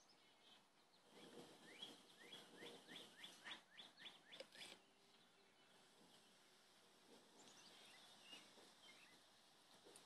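A bird singing faintly outdoors: a run of about a dozen short, rising notes, roughly three a second, lasting about three seconds and ending a little before the halfway point. A few fainter chirps follow later.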